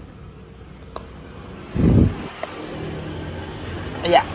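A short, loud low thump just before two seconds in, then a motorbike engine running at a low, steady speed.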